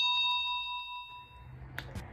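Bell-chime sound effect of a subscribe animation's notification bell, ringing out and fading over about a second and a half. A short click comes near the end over faint room hum.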